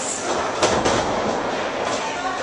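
Two wrestlers grappling in a ring: a steady scuffling rumble of bodies and feet on the ring canvas, with a couple of sharp thuds about half a second to a second in.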